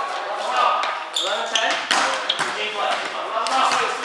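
Indoor volleyball game: players' voices echoing in a gymnasium, with several sharp thuds of the ball being hit and bouncing on the floor.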